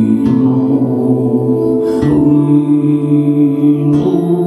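Sámi joik sung live by a man in long held, chant-like notes, with acoustic guitar and a bowed string instrument. The voice steps up to a higher note about two seconds in, over a steady note held underneath.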